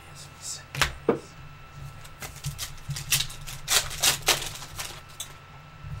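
Panini Donruss Optic basketball cards and packs being handled: a run of quick, irregular clicks and snaps of stiff card stock as cards are flipped through, over a low steady hum.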